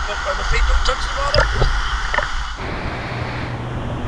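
Creek water sloshing and gurgling right against a camera held at the surface of a flowing rock pool. About two and a half seconds in it gives way to a smoother, steady rush of water from a small cascade.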